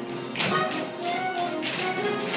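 Tap shoes striking the stage floor in a group tap dance, sharp strikes landing in time over accompanying music.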